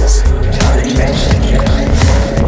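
Psychedelic dub (psydub) electronic music with a steady deep kick and bass pulse about twice a second and crisp high percussion clicks.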